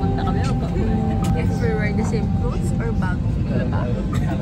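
Steady low drone of an airliner cabin in flight, with women's voices and background music over it.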